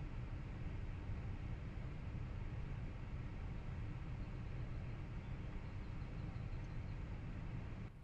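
Steady, low cabin noise inside a Tesla waiting at a traffic light: a faint hum with a light hiss and no distinct events.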